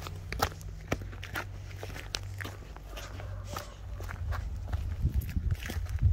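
Footsteps of hard-soled dress shoes on dry, loose gravel and dirt, at a steady walking pace of about two steps a second.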